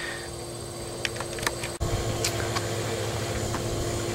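Steady low mechanical hum with a faint held tone, a few light clicks, and a brief dropout nearly two seconds in.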